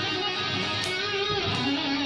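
Electric guitar playing a short tapped lick: a few sustained notes that ring on and change pitch a couple of times.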